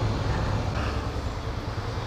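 Motorcycle engine running at a steady low hum as the bike rolls along in traffic, under a constant wash of wind and road noise.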